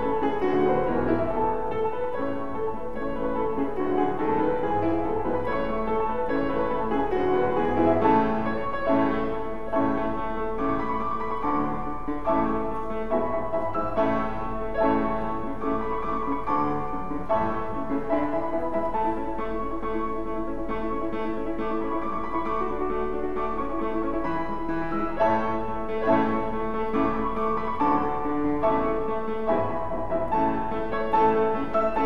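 Solo grand piano playing a classical piece, with a steady flow of notes and chords and no breaks.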